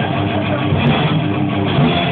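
Metal band playing loud in rehearsal, led by electric guitar riffing, with a steady, unbroken level throughout.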